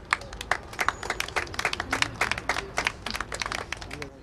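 Audience applauding, many separate hand claps in an irregular patter.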